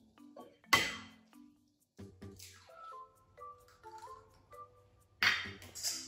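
An egg tapped sharply against the rim of a glass mixing bowl, cracking, about a second in, and another sharp clink near the end. A few soft background music notes sound in between.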